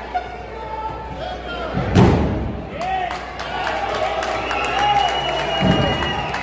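A wrestler slamming onto the wrestling ring's canvas: one loud thud about two seconds in and a lighter one near the end, amid shouting voices.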